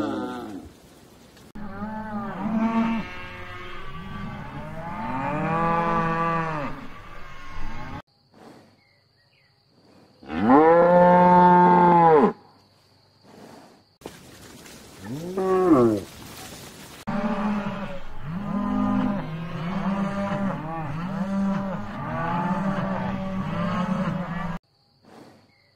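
Cattle mooing: a string of separate moos with abrupt cuts between them, the longest and loudest about ten seconds in, followed in the last third by a run of shorter moos in quick succession.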